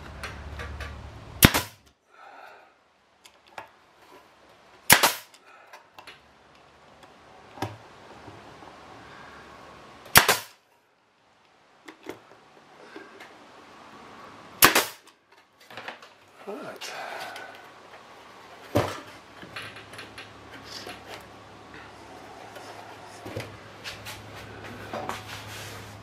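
Pneumatic nail gun driving finishing nails into a wooden nesting box: five sharp shots a few seconds apart, with quieter knocks of handling between them.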